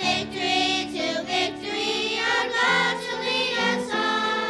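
Children's choir singing in unison over steady instrumental accompaniment.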